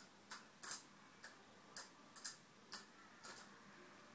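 A string of short, sharp clicks, unevenly spaced at about two a second, some of them close pairs.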